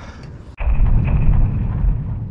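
Deep cinematic boom with a long rumbling tail, an edited-in sound effect for a title card. It hits suddenly about half a second in and fades slowly.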